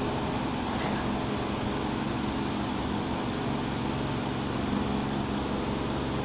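A steady mechanical hum with a few faint steady tones underneath, unchanging throughout.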